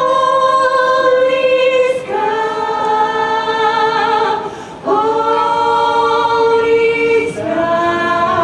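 A group of women singing together a cappella into handheld microphones, in long held notes in phrases that break off about two, four and a half, and seven seconds in.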